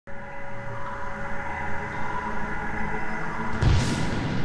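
Intro music: sustained synth tones over a low drone, with a rising whoosh and a deep hit about three and a half seconds in.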